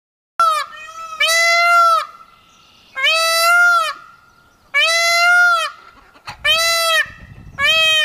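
White peacock (a leucistic Indian peafowl) calling loudly six times: one short call, then five longer calls of about a second each, evenly spaced. Each call rises slightly and drops off at its end.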